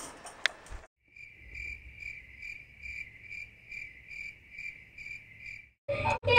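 Crickets chirping: one steady high chirp pulsing evenly a little over twice a second, starting and stopping abruptly at edit cuts.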